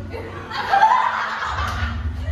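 A group of women laughing, with one high-pitched laugh loudest about a second in, over background music with a heavy bass.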